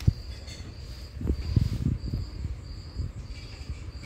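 A cricket chirping in a steady run of pulses, high-pitched, with low thumps and rustling from the cotton T-shirt being handled; the loudest thumps come just after the start and around a second and a half in.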